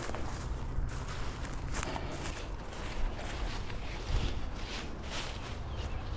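Footsteps of a person walking through dry field grass, soft regular strides over a steady low rumble.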